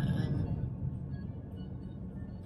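Steady low road and engine rumble inside a moving car's cabin, with a short voice sound at the very start.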